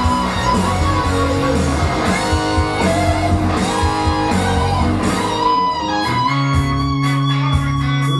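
Electric guitar played over a rock backing recording with bass and a beat; about six seconds in the backing changes to long held low notes.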